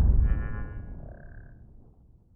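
Logo-intro sound effect dying away: the deep tail of a boom fades out, with a brief high ringing shimmer and then a short clear tone about a second in.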